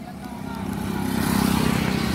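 Motor scooter engine approaching and passing close by, growing steadily louder to a peak about one and a half seconds in.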